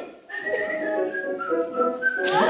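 A person whistling a short tune: a string of held notes that step down in pitch, starting about a third of a second in.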